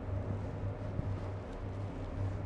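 Quiet room tone: a low steady hum, with one faint tap about a second in.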